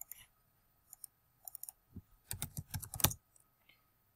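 Computer keyboard and mouse clicks: a few scattered clicks, then about two seconds in a quick run of key presses as a short word is typed, ending with one louder key press.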